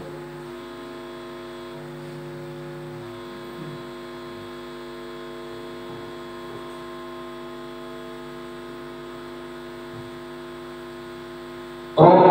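Steady electrical mains hum from a public-address sound system: a buzz made of several steady tones, holding even throughout.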